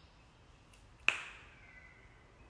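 A single sharp click about a second in, with a short ringing tail that fades within half a second, over faint room tone.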